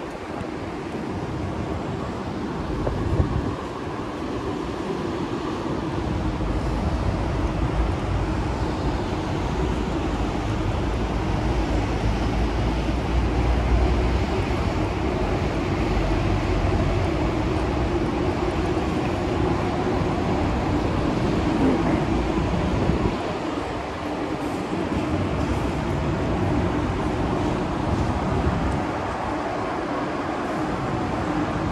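City street traffic: a continuous low rumble of vehicle engines and road noise, heaviest through the middle stretch and easing off twice near the end. There is a single short knock about three seconds in.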